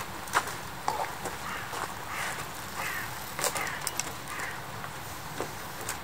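A crow cawing about five times in the background, each call harsh and falling in pitch, with a few sharp clicks and knocks from the trials bicycle being ridden and balanced.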